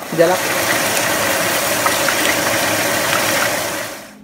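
Meat pieces boiling hard in their liquid in a pot, a steady hiss with faint crackles as the fat they give off starts to fry; the sound fades out near the end.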